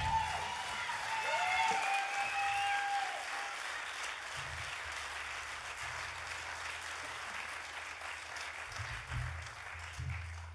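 Theatre audience applauding at the end of a song, with a few drawn-out tones in the first three seconds. The clapping swells about two seconds in, then thins out toward the end.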